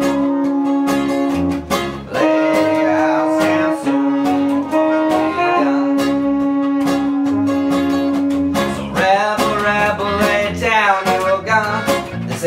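A live ska band plays an instrumental break. Trumpet and trombone hold long, steady notes over strummed acoustic guitar and bass in an even rhythm. About eight and a half seconds in, the held horn notes stop and a wavering vocal line comes in.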